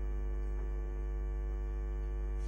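Steady electrical mains hum with a buzz of overtones on the recording, unchanging throughout.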